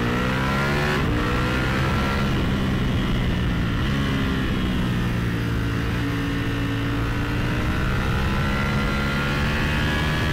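Ducati Panigale V4S's Desmosedici Stradale V4 engine pulling in first gear, heard on board: the revs climb in the first second, break briefly, then hold fairly steady with small dips and rises.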